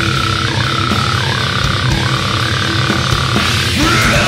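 Heavy metal noise track of drums and guitar riffs with sent-in noises layered over them. One long high tone is held throughout, dipping briefly in pitch three times.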